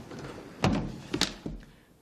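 Thumps of a podium gooseneck microphone being handled: two sharp knocks about half a second apart, then a softer one.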